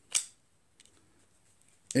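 A short, sharp metallic click-scrape near the start as the cylinder base pin of a Ruger .357 Magnum Blackhawk revolver is pulled forward out of the frame.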